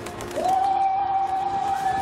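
A long held vocal call on one steady note, starting about half a second in with a quick rise into the pitch.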